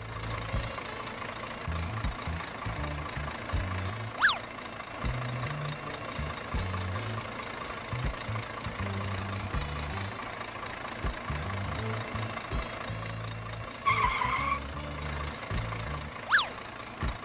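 Background music with a stepping bass line and a faint steady hum under it. A quick whistle-like sweep sounds about four seconds in, and a short warbling tone comes near the end.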